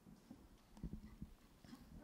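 Faint handling noise from a handheld microphone: a few soft, low knocks and rustles, clustered about a second in, as the grip on it shifts.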